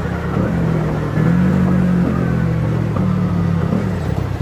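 A 70cc single-cylinder four-stroke motorcycle engine running steadily under way, heard from the rider's seat. It has a low, even note that gets louder about a second in.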